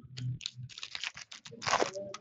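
2015-16 Upper Deck hockey trading cards being handled and flipped through by hand: a quick run of sharp clicks and snaps, with a louder rustling swish of cards near the end.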